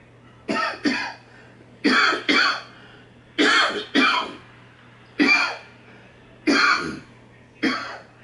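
A person coughing in a long fit: about nine harsh coughs, several coming in quick pairs.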